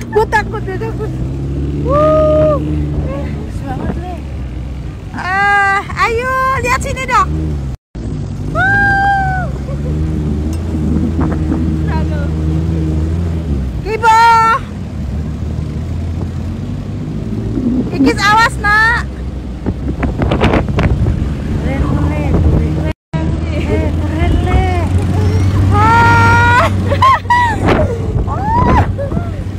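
A jeep's engine runs steadily while riding over beach sand, with people's voices calling out over it. The sound drops out briefly twice, at about 8 and 23 seconds in.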